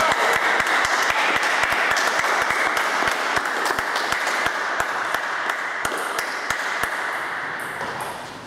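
Applause: dense clapping that fades away near the end.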